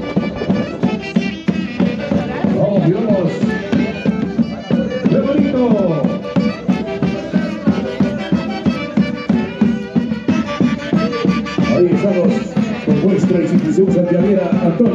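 Traditional Andean Santiago festival music played for dancing, lively with a steady beat.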